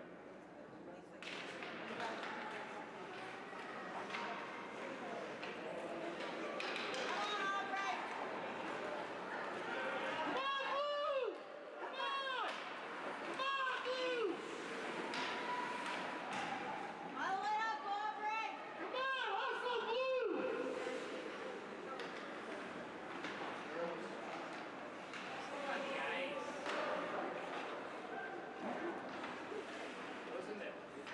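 Youth ice hockey game heard from rinkside: a steady rink din with scattered knocks of sticks and puck. About ten seconds in, and again a few seconds later, comes a run of high shouted calls, each rising and falling in pitch.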